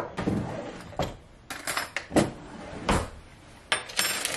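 Kitchen handling sounds: a handful of separate knocks of objects set down on a plate and countertop, with paper crinkling as a wrapped block of butter is handled and opened.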